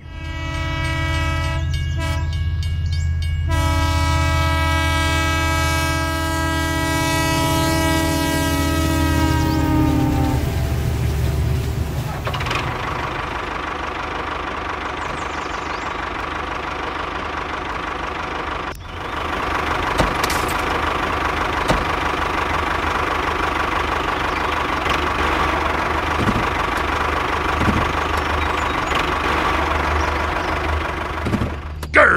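Train horn: two short blasts, then a long one over a deep rumble, sagging slightly in pitch before it stops about ten seconds in. A steady rumbling running noise follows for the rest.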